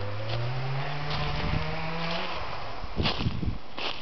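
A motor vehicle engine drones steadily, rising in pitch about a second in, then dies away. A few short crunching noises, typical of footsteps in dry leaf litter, follow near the end.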